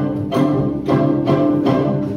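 String orchestra playing, with bowed strings sounding repeated accented strokes about twice a second over a sustained low chord.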